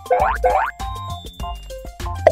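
Two short cartoon sound effects in quick succession, each a fast sweep in pitch, followed by background music made of short notes.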